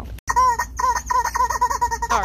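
A rubber chicken squeeze toy squeezed over and over, squawking: one longer squawk, then a quick run of short ones.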